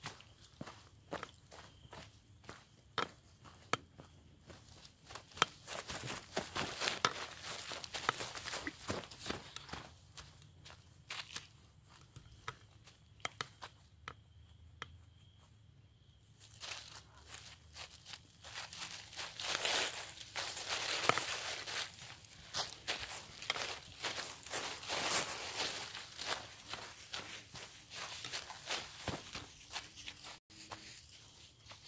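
Quick footsteps crunching and rustling through dry leaf litter on a forest trail, a steady run of short crackling steps that grows louder and denser for a few seconds in the first third and again through much of the second half.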